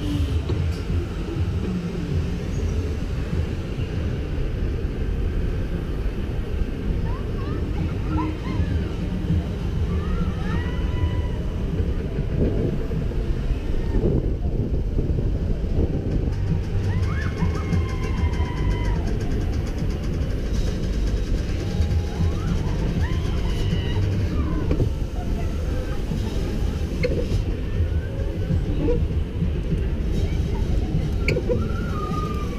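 Wind rushing over a GoPro microphone in a moving Astro Orbiter rocket as it circles, together with the ride's rumble: a dense, fluttering low rush throughout. Faint distant voices rise and fall now and then.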